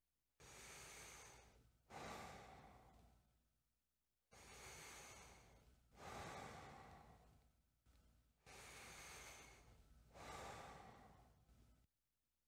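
A man's slow, relaxed breathing through the mouth: three unhurried breaths, each drawn in and then let out, about four seconds per cycle. These are easy diaphragm breaths, taken without strain, as a brass player's breathing exercise.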